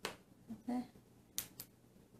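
Whole coffee beans dropped by hand into a small glass jar onto half-set candle wax, giving a few sharp clicks: one at the start and two close together about a second and a half in.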